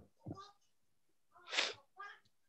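A short, breathy puff of air from a person at a call microphone, about one and a half seconds in, with a faint bit of voice just before it.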